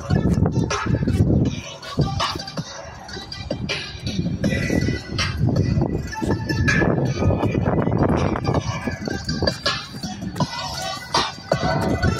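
An instrumental song playing through a pickup truck's aftermarket Resilient Sounds 6½-inch door speakers, heard from a distance across an open lot.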